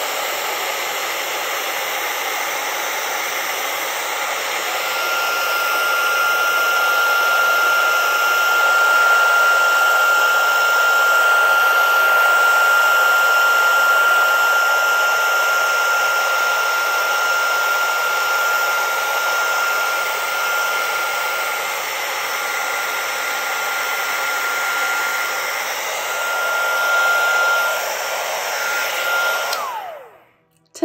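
Heat gun blowing hot air steadily, with a steady high whine over the rush of air from about four seconds in. It is switched off just before the end and the whine falls away.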